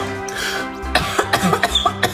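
Background music over close-up eating sounds: marrow sucked from a roasted bone, then a quick run of wet mouth clicks in the second half.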